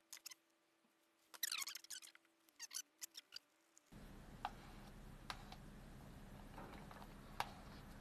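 Faint plastic handling sounds as fibreglass resin is poured into a plastic mixing cup: a short cluster of pouring and knocking sounds about a second and a half in, then a few quiet clicks.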